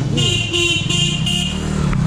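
A scooter's horn beeping four times in quick succession, short high-pitched toots, over a steady low hum.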